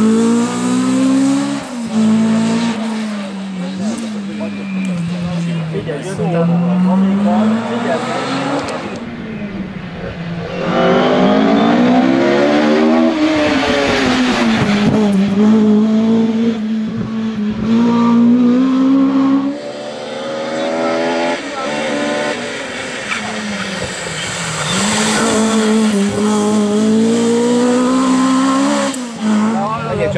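Ford Escort Mk2 historic rally car driven hard: the engine revs rise and fall repeatedly as it brakes, shifts and accelerates through corners over several passes.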